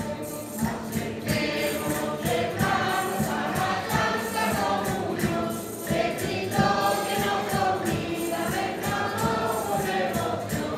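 A Canarian folk group singing in chorus to strummed strings, with a tambourine keeping a steady beat; the voices come in about a second in.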